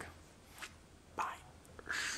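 Mostly quiet room, with a soft breath a little over a second in and a faint tick or two. Near the end a hand brushes against the camera as it is reached for, making a rustling noise.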